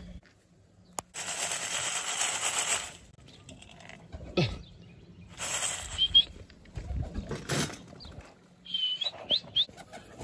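Pigeon wings flapping in bursts: a long stretch of wingbeats starting about a second in, another shorter one around the middle. A few short, high, rising bird chirps come around the middle and near the end.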